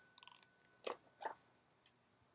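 Near silence, with a few faint, very short clicks spread through it.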